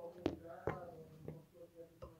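A faint voice murmuring in the background, broken by a few sharp clicks.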